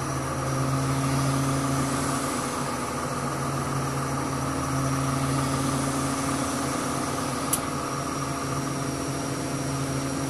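Crane engine running steadily, heard inside the cab, an even low hum. One short click comes about seven and a half seconds in.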